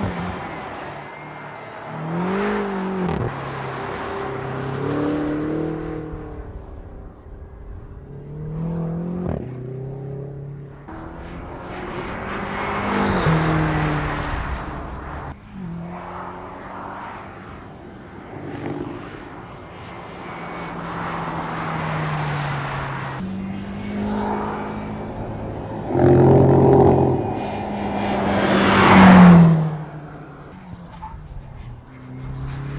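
BMW X6 M's twin-turbo V8 being driven hard around a racetrack, its pitch repeatedly climbing and dropping as it accelerates, shifts and brakes for corners. The car sweeps past several times with a rush of tyre and wind noise, the loudest pass just before the end.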